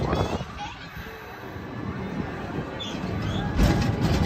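Wind rumbling on a phone microphone over a steady hum of fairground background noise, with faint distant voices.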